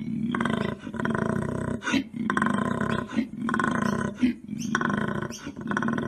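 Koala bellowing: a deep, rough, pulsing call in a run of phrases about a second long, each broken by a short, sharp catch of breath.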